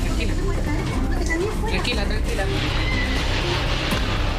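Earthquake rumble caught on phone videos: a heavy low rumbling with people crying out now and then, under a music bed.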